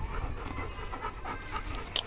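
Labrador retriever panting steadily and fairly quietly.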